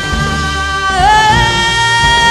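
Live band music with electric guitar, bass and drums: a long held melody note over the rhythm section, sliding up to a higher held note about a second in.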